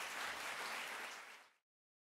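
Audience applauding, fading out quickly about one and a half seconds in.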